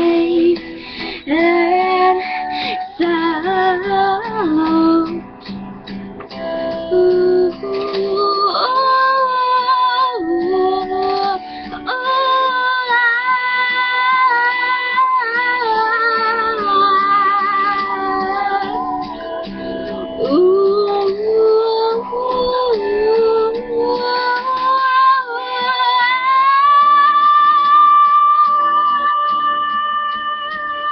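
A girl singing along to a recorded pop song, in wordless held and wavering notes over the track's backing.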